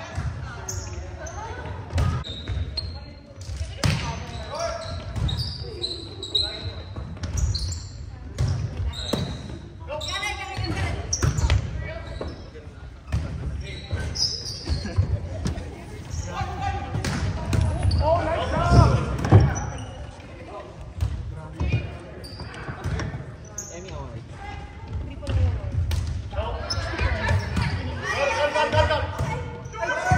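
Indoor volleyball rally sounds in a gymnasium: repeated sharp smacks of the ball off hands and floor, mixed with players' shouts and calls, echoing in the large hall.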